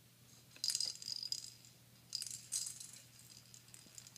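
A hand-held toy rattle shaken in two short bursts, the first about half a second in and the second just past two seconds.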